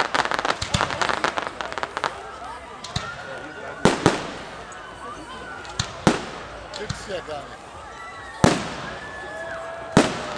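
Aerial fireworks going off: a rapid crackling of many small reports in the first two seconds, then single loud bangs of bursting shells about four, six and eight and a half seconds in.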